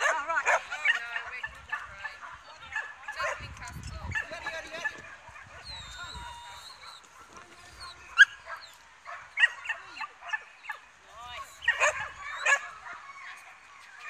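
Dogs yipping and barking excitedly in many short, high calls, with the loudest yelps about eight seconds in and again near the end.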